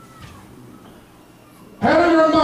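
A pause in a man's speech: faint room sound with two faint, short squeaky glides, then the man's voice starts again near the end.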